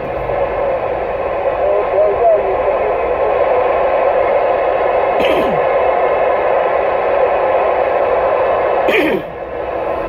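Uniden Grant XL CB radio receiving: a steady hiss of static from its speaker, narrow and radio-like, with no clear voice. A couple of brief falling whistles cut through it about five seconds in and again near the end.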